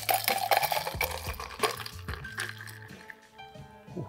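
A shaken cocktail with crushed ice poured from a metal shaker tin into a glass: liquid splashing with a light clink of ice. It is fullest in the first couple of seconds, then thins out as the tin empties.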